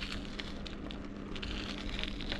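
Tyres rolling over a gritty dirt-and-gravel track: a steady low rumble with scattered small crackles of grit, and a faint steady hum underneath.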